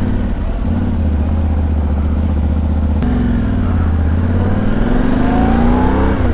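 Yamaha Ténéré 700 World Raid's 689 cc CP2 crossplane parallel-twin engine, on its stock exhaust, running under way at a steady note. A click comes about halfway through, then the engine note dips and climbs steadily as the bike accelerates.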